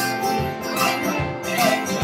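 Live band music: acoustic guitars strumming over a steady beat of percussion.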